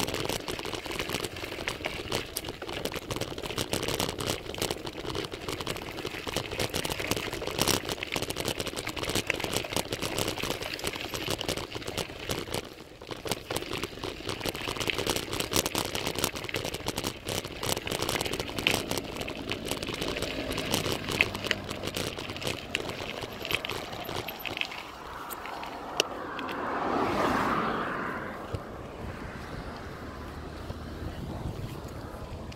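Ride noise from a road bike under way: a constant crackle of small clicks and rattles over a rushing haze, from tyres on a rough surface and the frame. Near the end a louder whoosh rises and fades.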